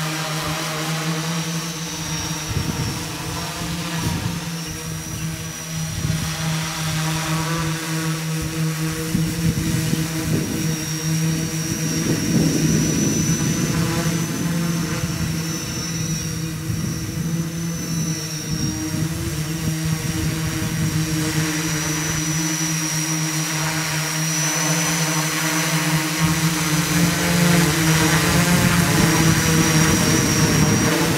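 HexaKong XL-6S heavy-lift hexacopter, its six 400 kV motors driving 14-inch props, flying overhead with a steady multi-rotor buzz and a thin high whine. It grows louder toward the end as it comes closer.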